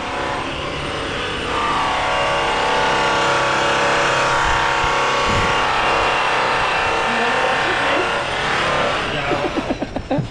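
Electric wheel polisher running steadily on a car wheel, a motor whine that builds up about a second and a half in and eases off near the end.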